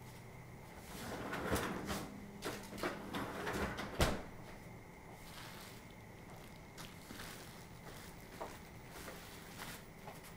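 Kitchen handling sounds at a refrigerator: a dish and the fridge door being moved, with rustles and small knocks, then one sharp knock about four seconds in and a few faint clicks afterwards.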